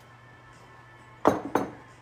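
Two short clunks about a third of a second apart, the first the louder, as an olive oil bottle and a seasoning container are set down and picked up on a wooden kitchen countertop. A low steady hum lies under them.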